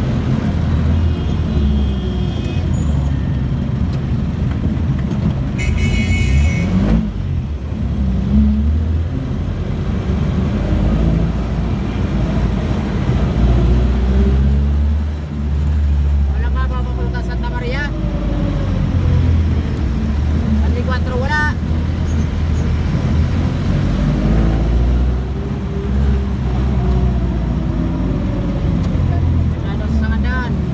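Passenger jeepney's diesel engine running, heard from inside the cabin, with a heavy low rumble. Its pitch rises and falls a few times as it revs through the gears. A brief high tone sounds about six seconds in.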